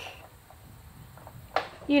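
A short pause in a woman's speech, with only a faint low background rumble, then she starts talking again about one and a half seconds in.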